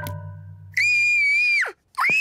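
A cartoon girl's voice screaming in fright: one long, high scream held level for about a second, dropping away at the end, with a second scream starting right at the close. A held musical chord with a pulsing bass fades out just before the scream.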